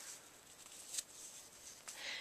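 Faint rustling of fingers twisting strands of hair, with a few light ticks, the sharpest about a second in.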